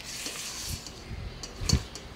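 A spatula stirring and scraping a thick nut-and-breadcrumb cake batter in a stainless steel mixing bowl, with faint scrapes and a dull low thump near the end.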